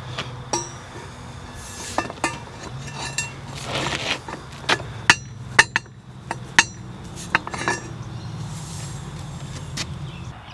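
Steel pallet-fork arm being handled and slid onto the square-tube centre section of a mini excavator pallet fork kit: a series of sharp metal clinks and knocks with a brief scrape about four seconds in, over a steady low hum.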